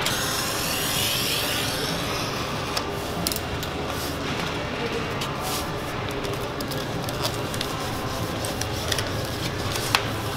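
Rustling and rubbing of laminate film and its paper backing being handled on a roll laminator, with scattered light ticks over a steady low hum.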